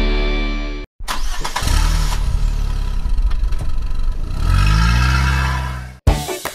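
Music fades out, there is a brief cut to silence about a second in, then a car engine starts and runs, revving up with a rising pitch near the end.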